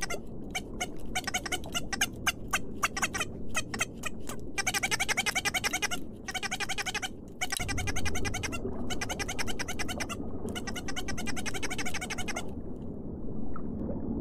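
A waterbird chick peeping in rapid runs of short, high calls with brief pauses between them, over a low steady rumble; the peeping stops near the end.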